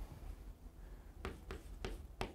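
Chalk writing on a chalkboard: a few faint, short strokes and taps in the second half.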